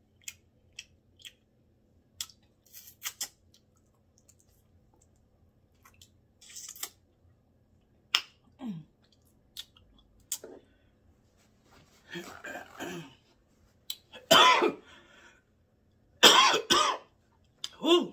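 A woman chewing with small mouth clicks, then coughing loudly several times in the last six seconds, her throat set off by hot sauce.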